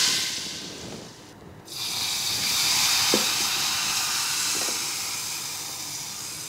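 Hot spiced oil sizzling in a saucepan. About two seconds in, water is poured onto the hot oil and gives a loud hiss of steam that slowly dies down.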